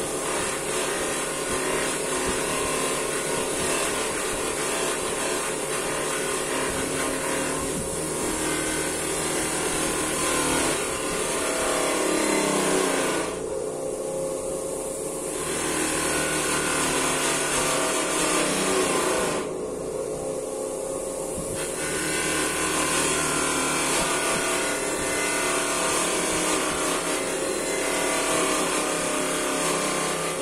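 A 700 W bench polishing machine running steadily with a shell casing pressed against its spinning wheel, a rubbing hiss over the motor's hum. Twice near the middle the hiss drops away for about two seconds, leaving only the motor's hum.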